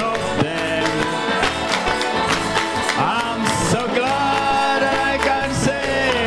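Live gospel worship music: a band playing with voices, and a congregation clapping along.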